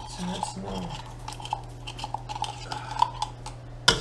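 Small clinks and scrapes of a metal knife against a cooking pot as tomato paste is worked off the blade into the stew ingredients, with one sharp tap near the end.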